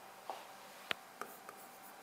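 A few faint taps of a pen on an interactive whiteboard screen, the sharpest about a second in.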